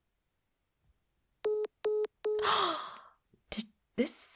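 A phone's call-ended tone: three short, identical beeps about half a second apart, the sign that the other party has hung up. It is followed by a breathy sigh and a short click near the end.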